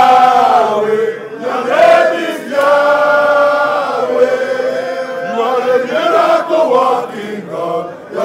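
A crowd of men chanting together in unison, in long held sung phrases with short breaks between them.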